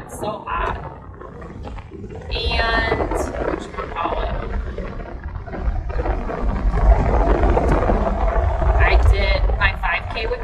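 Low rumble inside a car cabin, stronger in the second half, with a woman's wordless voice sounds breaking in twice, briefly.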